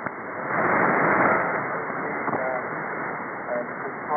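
Shortwave broadcast on 17.660 MHz received in synchronous AM on a software-defined radio: a narrow, muffled band of hiss and static with weak speech fragments buried in it. The signal is fading, and the noise swells louder about half a second in.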